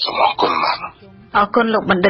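A person clears their throat once, a short rough burst, and then talking resumes about a second later.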